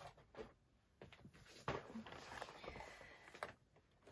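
Faint rustling and a few light knocks of craft supplies being moved about and set down on a table.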